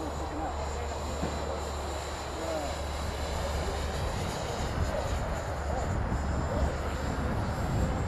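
A 450-size electric RC helicopter flying overhead, its motor and rotors giving a faint, steady, high whine. Distant voices are heard over a low rumble.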